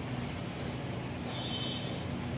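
Steady low mechanical rumble with a faint hum, like vehicle noise, and a thin high tone for about half a second near the end.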